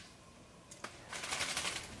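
Near silence, then a single light click and a run of fine crackling and rustling in the second half: leaves and branches of a plant being handled.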